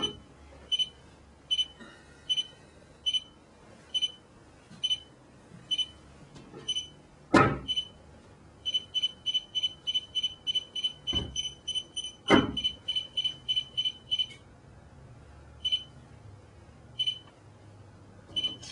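A phone app beeping in short, high beeps, about one a second at first, then about four a second for some five seconds, then only now and then. The quick beeping comes while the phone lies beside the remote Bluetooth device, so the beep rate marks signal strength. A few sharp knocks come from the phone being set down on the wooden board.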